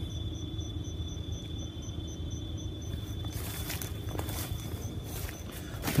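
Insects calling: a steady high buzz with a fainter chirp pulsing about four times a second. From about halfway, rustling and crackling from steps through weedy undergrowth and mulch joins in.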